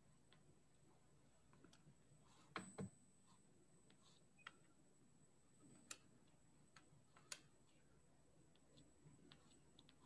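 Near silence broken by a handful of faint, scattered clicks and ticks from a soft pastel stick being worked against paper.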